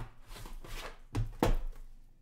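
A metal hockey card tin (2021-22 Upper Deck The Cup) is slid out of its cardboard box with a scraping rustle, then set down on the table with two quick knocks, the second the louder.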